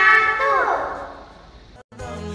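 Two young girls reciting a prayer together in a singsong voice, the last word held and falling in pitch, then fading out within about a second. A brief dropout to silence comes just before the end.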